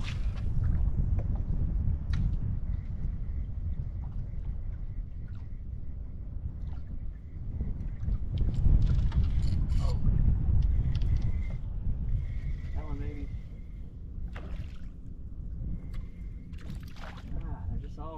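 Wind buffeting the microphone in a loud, uneven low rumble over water lapping against a small flats skiff's hull, with scattered light clicks.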